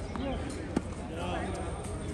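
A single sharp knock of a tennis ball, either bouncing on the hard court or struck by a racket, a little under a second in.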